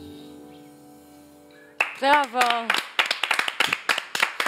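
A live band's final chord rings out and fades. About two seconds in, a voice briefly calls out, and then a few people clap quickly.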